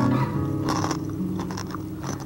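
Crunching as someone bites and chews a raw cucumber, one clear crunch a little under a second in, over background music with held low notes.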